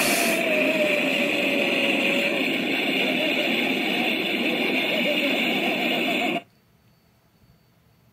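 Explosion sound effect from a nuclear blast clip, played through computer speakers: a loud, steady roar that cuts off suddenly about six and a half seconds in, leaving near silence.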